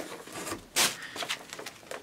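Pages of a thick paper catalog being flipped and handled, rustling, with one sharp papery swish a little under halfway through.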